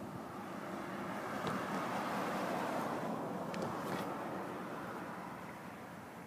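An SUV passing by on the highway, its tyre and engine noise swelling to a peak about two to three seconds in and then fading away.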